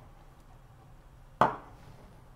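Quiet bubbling of a marinade boiling in a steel saucepan as vinegar goes in, with one sharp knock about one and a half seconds in.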